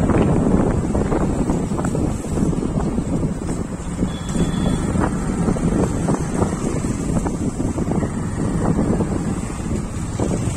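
Wind buffeting the microphone of a rider on a moving two-wheeler, over steady engine and road noise.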